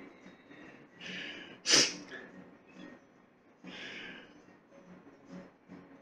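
A man nosing bourbon held in a tasting glass at his nose, breathing in through the nose. A short sharp sniff just before two seconds in is the loudest sound, with softer breaths about a second in and near four seconds.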